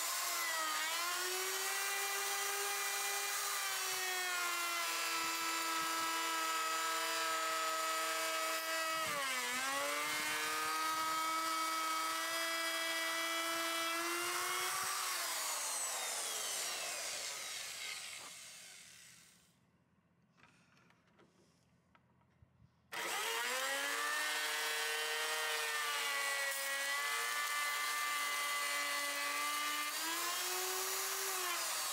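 Electric router with a bearing-guided bit spinning up and running at a steady high pitch as it cuts along the edge of a wooden guitar neck, the pitch dipping briefly about nine seconds in. About fifteen seconds in it is switched off and winds down to silence. A few seconds later it starts again and runs steady.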